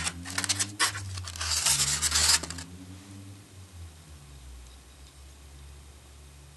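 Glass bottle-shaped wine glass rubbing and scraping against its polystyrene foam packaging insert as it is lifted out, with a few sharp clicks in the first second and a louder scrape at about two seconds. After that it goes quiet.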